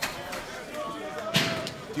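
Pro-wrestling arena sound: crowd voices and shouts, with a sharp crack at the very start and a louder bang about one and a half seconds in.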